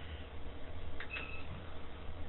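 A click, then a short high electronic beep about a second in, from a digital fingerprint scanner, over a steady low hum.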